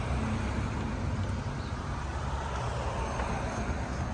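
Road traffic on the street alongside: a steady rumble of engines and tyres.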